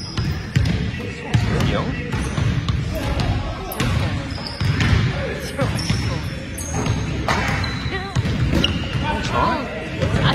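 Basketball bouncing repeatedly on a hardwood gym floor during play, with brief high sneaker squeaks and indistinct players' voices in a large echoing gym.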